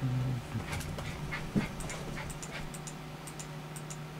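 Dogs whimpering and panting, with a short low whine right at the start, over a steady low hum.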